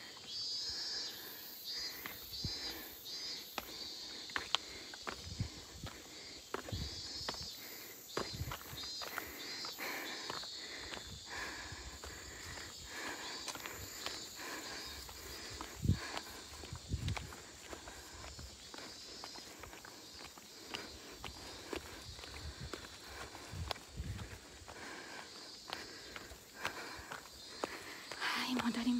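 Footsteps of a person walking outdoors: an irregular run of steps and scuffs. Faint high insect chirring is heard in the first few seconds.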